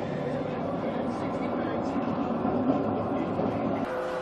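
A steady low rumble and rush on a ship's deck in a storm at sea: wind and sea mixed with the ship's running machinery, holding an even level throughout.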